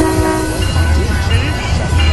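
A train horn sounds briefly at the start, mixed over background music with a steady bass beat and some voices.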